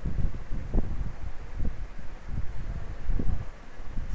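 Low rumbling microphone noise, like wind or breath on the mic, with a few faint short knocks and no speech.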